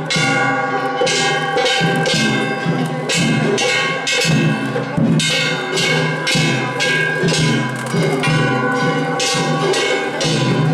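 Festival hayashi from a float: large brass hand gongs (kane) struck in a fast, continuous clanging, with taiko drums beating underneath.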